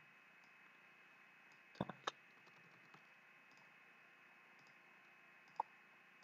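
Near silence broken by a few computer mouse clicks: a quick group of two or three about two seconds in, and a single click near the end.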